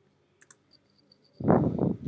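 Two sharp computer mouse clicks about half a second in, followed by a few faint, evenly spaced high ticks. Then, about one and a half seconds in, a loud, rough, low burst of noise lasting about half a second, the loudest sound here, from an unidentified source.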